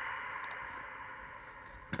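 Quiet room tone fading slightly, with a faint click about half a second in.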